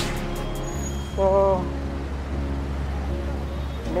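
Background music of sustained chords that change about a second in and again near the end, laid over city street traffic noise.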